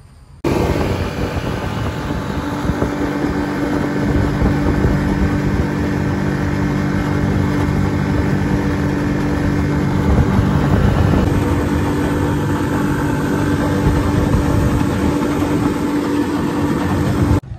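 Small outboard motor running steadily, pushing an aluminum jon boat along, with a constant rush of wind and water. It starts abruptly about half a second in and holds an even hum throughout.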